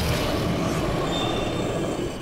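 A cartoon fog monster's roar: a loud, steady, rushing rumble like a gale, with no clear pitch, held for about two seconds.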